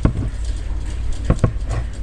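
A few short clicks and taps of metal feeding tongs and a dead rodent against newspaper and the plastic enclosure, one right at the start and several more in the second half. A steady low hum runs underneath.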